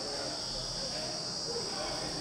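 A steady high-pitched insect chorus, with faint voices in the background.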